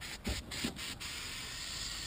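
Aerosol can of paint stripper spraying with a steady hiss, after a couple of faint knocks in the first second.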